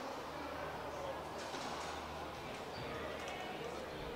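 Faint racquetball court sounds: a few light ball hits and footsteps echoing in the court over a steady low hum and a murmur of voices, with light ticks about a second and a half in and again near three seconds.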